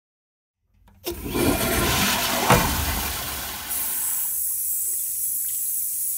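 A toilet flushes with a loud rush of water starting about a second in, then from about four seconds in a tap runs with a steady hiss.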